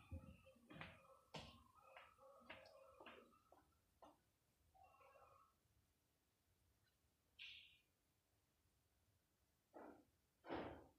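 Near silence: room tone, with a few faint knocks and brief distant sounds in the first few seconds.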